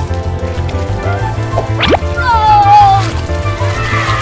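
Background music with a steady beat, with a quick rising whistle-like sweep just before two seconds in and a falling pitched glide right after it.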